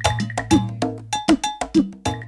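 Outro jingle music: a quick repeating pattern of bright, ringing struck percussion, about four hits a second, over a sustained low bass note.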